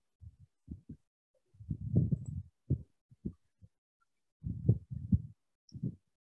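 Irregular dull low knocks and thumps, a few at a time, heaviest about two seconds in and again near five seconds in.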